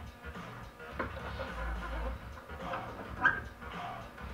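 Turntable platter being lowered onto the spindle and handled into place. There is a light knock about a second in and a low thud as it settles, over faint background music.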